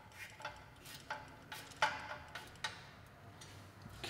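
Light, irregular metallic clicks of a hand tool snugging up the bolt of the clamp on a motorcycle exhaust pipe.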